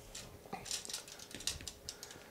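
Faint, irregular light clicks and taps of a chrome hand ratchet being handled and set down along a tape measure.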